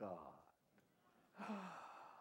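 A man's speaking voice: one short word, a pause of about a second, then a long drawn-out 'Oh'.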